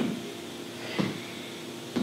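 Sneakers landing on a tiled floor during cross-body mountain climbers: two short taps about a second apart as the feet switch.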